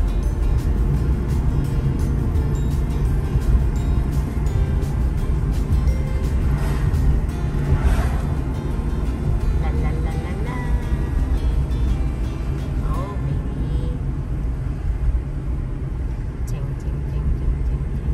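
Steady low road and engine rumble heard from inside a moving car, with music playing faintly and scattered faint ticks.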